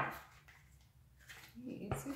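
Faint rustle and light clicks of a tarot deck being shuffled in the hands, with a short murmured voice near the end.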